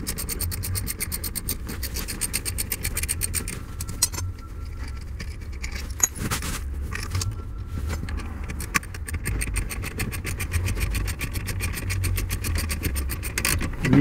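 Hand ratchet wrench clicking rapidly and evenly as it is worked back and forth to back out steering-column mounting bolts, with brief breaks about four and seven seconds in.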